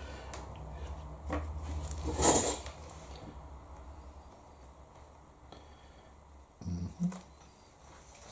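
Quiet room with a steady low hum and soft brush-handling noises, the loudest a short rustle about two seconds in, as a paintbrush is worked in a watercolour palette and taken to the paper.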